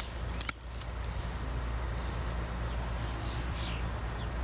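Outdoor ambience: a steady low rumble under a faint even hiss, with a single click about half a second in and a short, high, falling bird chirp near the end.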